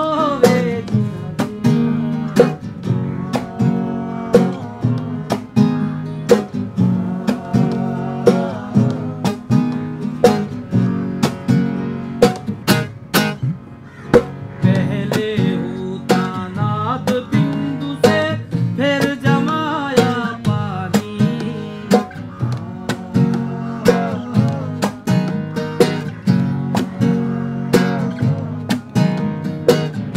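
Acoustic guitar strummed and picked in a steady rhythm, with a man singing a melody full of gliding, bending notes.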